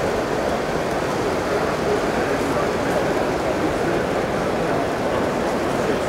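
Steady crowd chatter in a large exhibition hall, with no single voice standing out.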